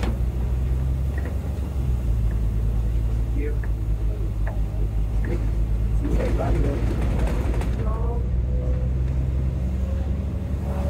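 Volvo B9TL double-decker bus's six-cylinder diesel engine heard from the upper deck, running as a steady low drone whose note shifts slightly about two seconds in.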